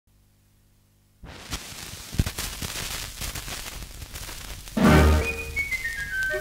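Shellac gramophone record starting to play. About a second in, surface hiss and crackle with scattered clicks set in suddenly as the stylus runs in the groove. Loud recorded music starts about five seconds in.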